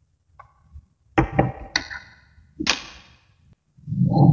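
Tiny magnetic balls clacking against each other as a magnet-ball plate is lifted and set onto a magnet-ball structure. A faint tick comes first, then three sharp clacks just after a second in, and another with a short ring near three seconds.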